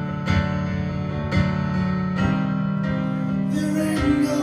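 Piano playing sustained chords, a new chord struck about once a second, in an instrumental passage of a slow song.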